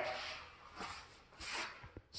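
Faint, effortful breathing from a man rising through a Turkish get-up with a 40 kg fatbell held overhead: a small breath about a second in and a stronger exhale a little after halfway, with faint rubbing from his movement on the mat.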